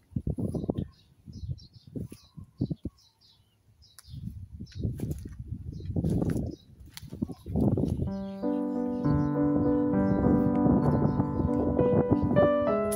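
A small bird chirping over and over, with irregular scuffs and rustles of someone walking over grass and rough ground; about two-thirds of the way in, background piano music begins and takes over.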